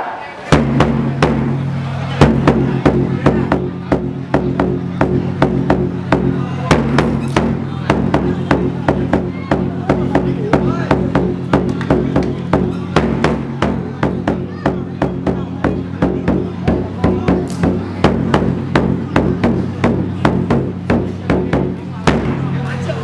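Drumming in a steady, fairly fast beat over a held low tone, starting about half a second in: the drum accompanying the wrestlers' ceremonial xe đài salute before a traditional Vietnamese wrestling bout.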